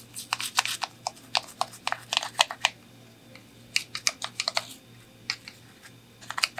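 Toothbrush scrubbing a small plastic toy part in soapy water: quick, clicky bristle strokes in two bursts with a short pause between them.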